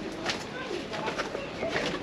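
Faint low bird calls over quiet outdoor background, with distant voices.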